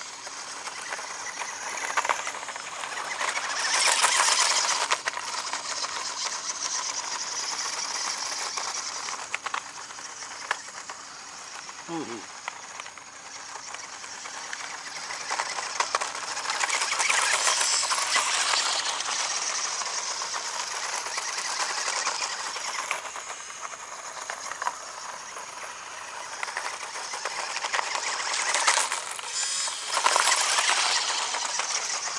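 Toy-grade RC off-road buggy driving over loose gravel: the whine of its small electric motor with the crunch and rattle of its tyres on the stones, swelling loudest as it passes close, around four, seventeen and twenty-nine seconds in. The throttle is on-off only, so the motor runs flat out.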